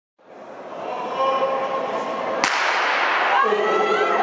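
A starting gun fires a single sharp crack about halfway through, ringing out in a large indoor hall. Crowd chatter runs underneath and rises after the shot.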